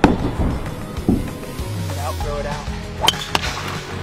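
Background music, with the sharp click of a golf club striking a ball about three seconds in and a short shout just before it.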